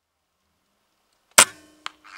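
An air rifle firing once, a single sharp crack about one and a half seconds in, followed by a smaller sharp click about half a second later.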